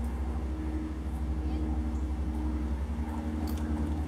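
A steady low machine hum, holding the same pitch throughout.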